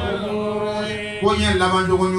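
A man's voice chanting Quranic recitation through a microphone in long, steady held notes, with a new phrase beginning a little past halfway.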